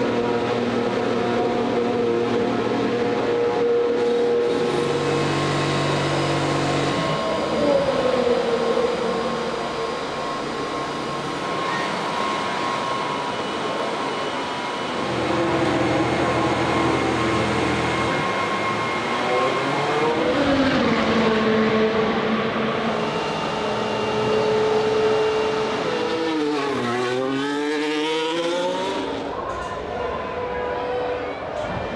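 Formula One car engines revving at high pitch, rising and falling several times, with a car sweeping past fast near the end, its pitch dropping.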